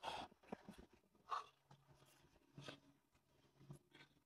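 Near silence, broken by a few faint short breaths about a second apart from someone catching their breath after a hard exercise set.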